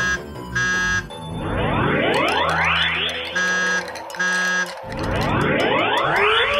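Cartoon sound effects over background music: rising swooshes that repeat every few seconds, and two pairs of short electronic beeps, one pair at the start and another about three and a half seconds in.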